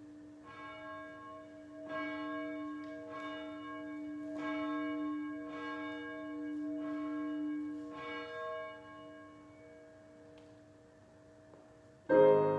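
A church bell tolled, struck roughly once every second and a bit, about seven strokes, then left to ring out and fade over the last few seconds.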